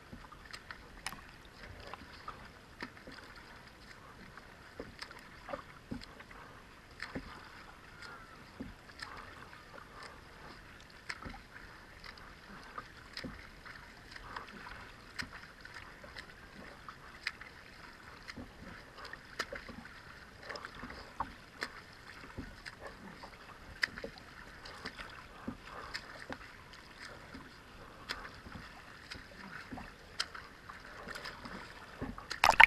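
Water splashing and lapping close to the waterline as a kayak is paddled alongside a freestyle swimmer: irregular short splashes from paddle and arm strokes over a steady wash of water.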